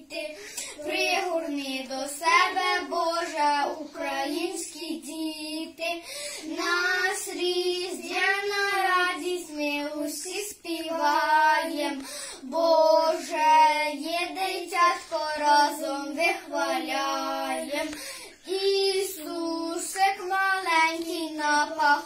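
Two young boys singing a Ukrainian Christmas carol (koliadka) together, unaccompanied, in steady sung phrases.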